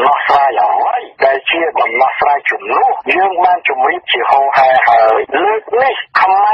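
Speech only: a voice talking continuously, with a narrow, radio-like sound.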